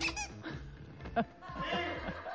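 A few short, high-pitched squeaks in quick succession right at the start, followed by a brief blip about a second in.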